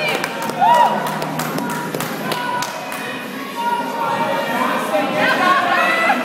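Voices of people talking and calling out in a gym, with a few short thuds and taps between them, most of them in the first half.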